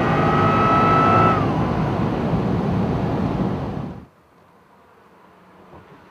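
Cabin sound of the Geiger Corvette C6's supercharged V8 pulling at high speed, with a high whine that climbs slightly and then falls away about a second in as the throttle eases. Engine and road noise carry on until an abrupt cut about four seconds in, after which it is quiet.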